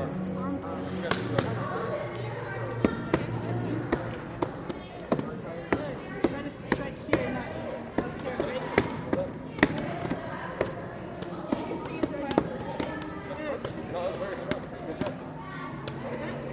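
Hand strikes smacking a handheld strike pad, a string of sharp irregular hits roughly every half second to a second, over background voices.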